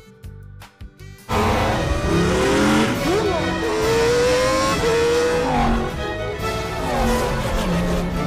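Animated-film race-car sound effects: engines revving and racing past, their pitch gliding up and down over a loud, dense noise, with music beneath. They cut in suddenly about a second in, after a moment of soft plucked music.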